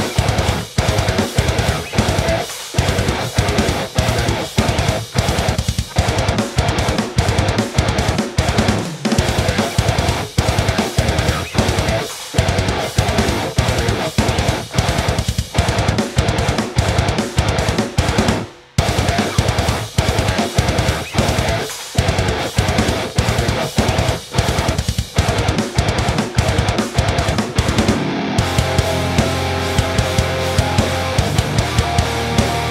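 Heavy metal demo mix: a seven-string Ibanez electric guitar tuned to drop G through a low-output DiMarzio PAF 7 pickup, with drums, playing tight stop-start rhythm riffs. The band stops dead for a moment about two-thirds of the way through, and near the end the guitar moves to a more sustained, held part.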